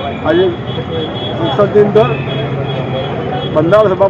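A man speaking in short phrases with brief pauses, over a steady background hum.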